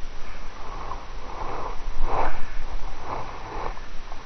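A person breathing through the nose close to the microphone, four breaths about a second apart, the loudest about two seconds in.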